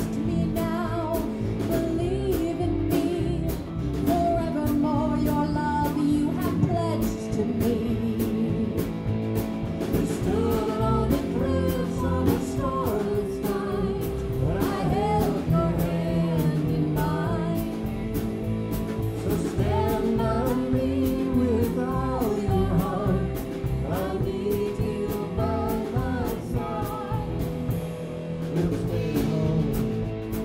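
Live rock band playing: electric bass, electric guitar and drum kit, with a woman singing lead over them.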